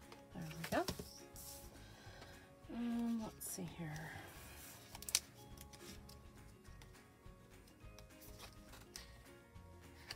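Scissors snipping a sticker and paper sticker sheets being handled, over soft background music, with a sharp click about five seconds in.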